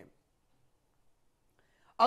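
Near silence: room tone in a pause between stretches of narration, with a faint short sound just before the voice resumes.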